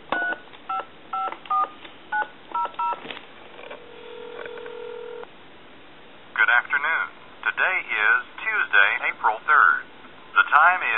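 Touch-tone keypad of a wood duck novelty telephone dialing seven quick DTMF digits, then one ring of ringback tone in the line, then a recorded time-and-temperature announcement speaking from about six seconds in.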